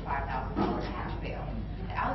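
A woman's voice speaking, reading out an account in a courtroom, over a steady low room hum.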